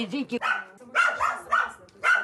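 A dog barking a few times in short barks, just after a woman's voice trails off.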